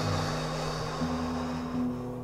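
A person's deep breath, a rushing hiss that fades away over the first second and a half, over soft background music with held low notes.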